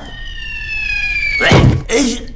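Cartoon falling-whistle effect: a slowly descending whistle that ends in a loud thud about a second and a half in, as the character lands on a wooden floor.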